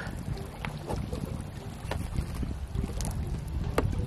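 Wind buffeting the microphone: a low, steady rumble, with a few brief clicks.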